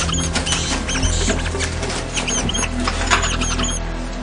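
Rats squeaking: a scattered run of short, high-pitched squeaks over a steady low drone.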